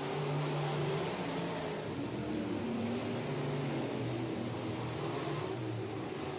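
Several dirt-track race cars' engines running at speed around the oval, a steady drone whose pitch rises and falls as the cars go round.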